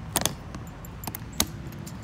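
Small metal items being handled on the motorcycle's luggage, with sharp metallic clicks and clinks: a quick cluster near the start, a couple more about a second in, and one sharp click about one and a half seconds in.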